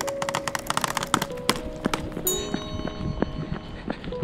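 Background music: several held notes layered over quick, irregular clicks, with higher notes joining a little past halfway.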